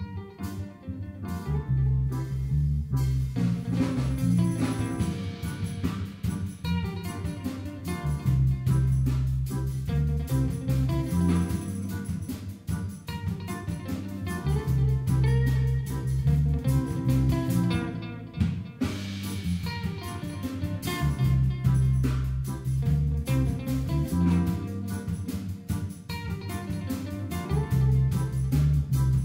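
Live band playing an instrumental passage: electric guitar, electric bass, keyboard and drum kit, with the full band sound coming in about two seconds in.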